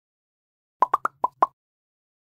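Logo sound effect for an end card: five short, pitched pops in quick succession over a faint low hum, starting just under a second in.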